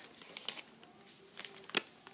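Faint crinkling of a soft plastic makeup-remover wipes packet being handled, with a few short crackles, the clearest one near the end.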